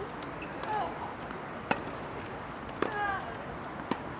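Three sharp strikes of a tennis racket on the ball, about a second apart, in a rally.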